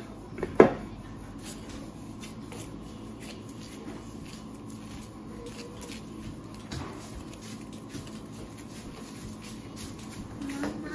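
Hands in plastic gloves handling and kneading tortilla dough on a floured board: faint rustling and soft pats. A sharp knock comes about half a second in, just after a smaller one, and a lighter tap comes near the seven-second mark.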